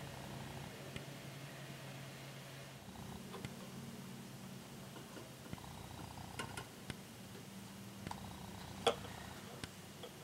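Faint handling of small parts: a few light clicks and taps as small 3D-printed plastic window pieces are fitted and pressed onto a small wooden model house by hand. The sharpest click comes near the end. A low steady hum runs underneath.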